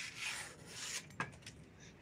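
A sharp kitchen knife slicing through a sheet of paper held in the air: a rasping hiss lasting about a second, followed by a single light click.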